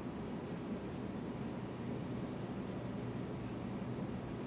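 Dry-erase marker writing on a whiteboard, a series of faint short strokes over a steady low room hum.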